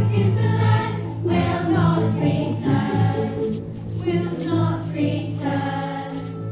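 A choir of voices singing a stage number with musical accompaniment.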